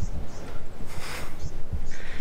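Wind buffeting a handheld camera's microphone: irregular low rumbling thumps, with a brief hiss about a second in.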